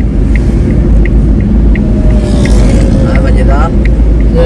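Car road noise and engine rumble heard from inside a moving car on a highway, with a steady ticking about three times a second, alternating loud and soft. A voice with gliding pitch comes in about halfway through.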